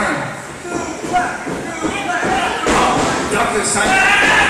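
Voices calling out in a large, echoing gymnasium, with a few dull thuds of wrestlers hitting the ring mat.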